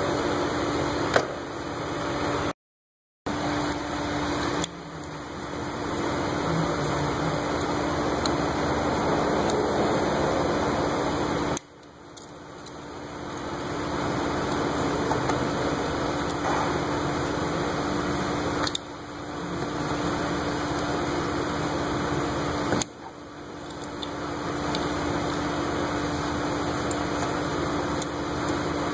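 A suction device runs steadily, holding a slight vacuum on the car's cooling system so no coolant spills while a hose is off. It makes a continuous noisy rush with a low hum, dropping away briefly a few times and building back up.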